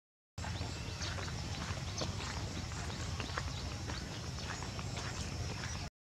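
Outdoor background: a steady low rumble with many light, irregular clicks and taps scattered through it. Cut to dead silence briefly at the start and again near the end.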